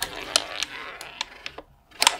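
Klask game pieces knocking in play: the ball and magnetic strikers clicking against each other and the wooden board in a quick, irregular run of sharp clicks, with a brief lull near the end.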